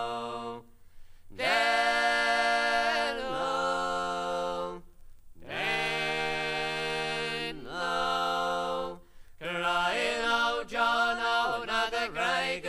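Unaccompanied three-part folk harmony singing by two men and a woman: long held chords that bend downward at the ends of phrases, with short breaths between them. From about ten seconds in, the notes come quicker as the next line begins.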